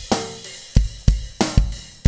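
Multitrack rock drum kit loop playing back as a full mix, each drum track compressed, gated and EQ'd: a driving kick drum pattern with two snare hits over cymbals.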